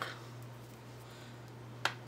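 Quiet room with a steady low electrical hum, and a single sharp click near the end.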